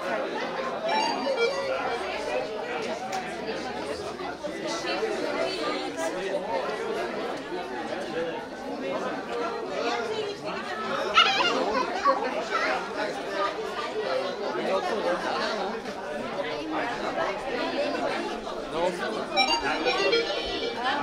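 A crowd of people chatting at once, many overlapping voices with no single clear speaker.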